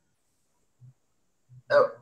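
Near silence, then a man starts speaking near the end.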